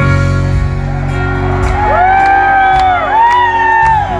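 A live band starts a song with a deep sustained chord and piano. Twice in the second half, audience members let out long rising-and-falling whoops over the music.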